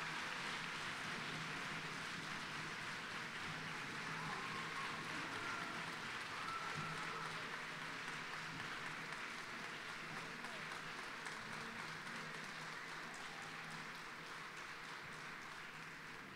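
Audience applauding at the end of a speech, a long steady round of clapping that slowly fades toward the end, with a few faint voices mixed in.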